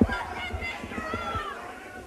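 Men yelling and shouting in a scuffle, with a few dull thuds, the voices fading.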